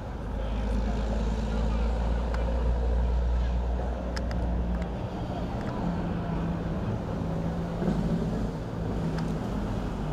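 A low, steady engine drone, loudest in the first half, with a few faint sharp knocks and distant voices over it.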